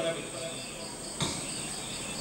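Faint insect chirping, a high pulse repeating about five times a second, heard in a pause between words. A single soft knock comes a little past the middle.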